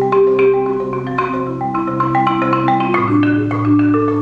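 Solo marimba played with mallets: a quick pattern of struck higher notes over long held low notes, the bass moving down to a lower note about three seconds in.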